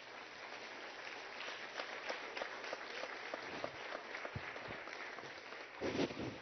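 Applause from a chamber of seated legislators: many hands clapping steadily together, with a louder knock or two near the end.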